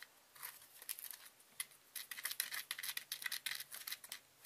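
A plastic spoon stirring dry loose glitter in a small plastic cup: a gritty scraping and rustling in short, irregular strokes.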